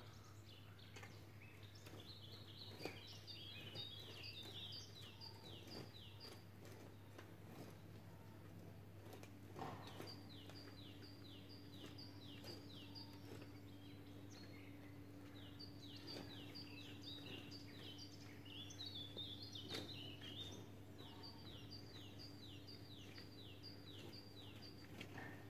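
A songbird singing faintly in repeated bouts, each a quick series of short descending notes lasting two or three seconds, over a steady low hum. Occasional soft knocks and scrapes of a garden hoe working the soil are heard in the gaps.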